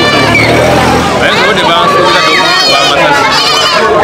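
A man speaking in Luganda with street chatter behind him. A low steady hum runs under the speech for about the first second.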